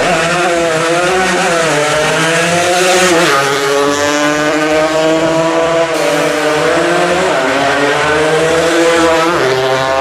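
Small-displacement racing motorcycle engines revving hard, the pitch rising and falling as the riders accelerate, brake and shift through the corners, with a sharp climb in pitch near the end.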